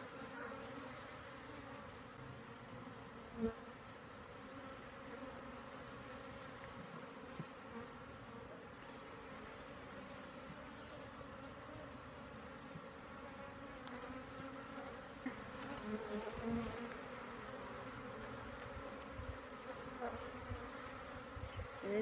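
Steady hum of a honeybee colony from an opened hive while brood frames are lifted out and inspected, with a single brief knock about three and a half seconds in.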